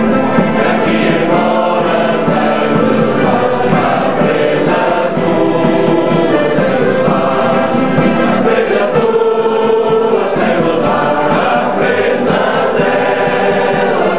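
A Portuguese men's folk choir singing in chorus, accompanied by plucked acoustic guitars.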